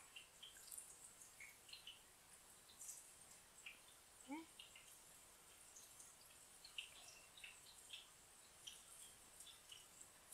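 Faint crackle of eggplant slices deep-frying in hot oil, with small irregular pops scattered throughout.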